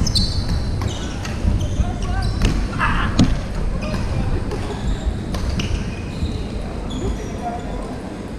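Badminton games echoing in a large hall with a wooden floor: sharp racket-on-shuttlecock hits, short high-pitched squeaks of court shoes on the boards, and scattered thuds of footsteps, over the murmur of players' voices.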